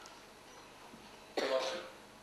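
A single short cough about one and a half seconds in, over quiet room tone.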